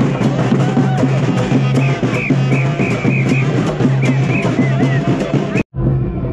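Sri Lankan papare band playing: drums beating a quick, steady rhythm under held horn notes and short high brass phrases. It cuts off abruptly near the end.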